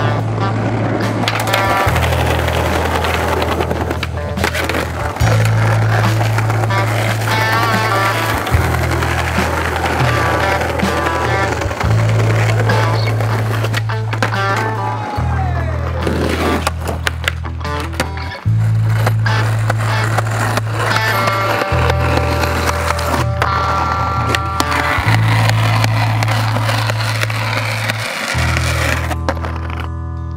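Skateboard wheels rolling over paving stones, with sharp clacks from the board's tricks and landings. A soundtrack with a steady, repeating bass line of held notes runs underneath.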